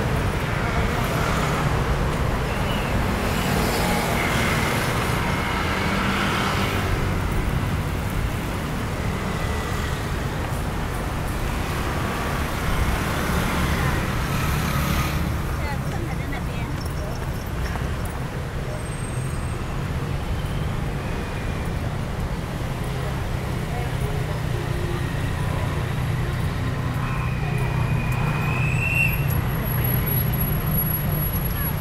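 Street traffic from cars and motor scooters on the road alongside: a steady rumble of engines and tyres, with louder vehicles passing a few seconds in and again around the middle.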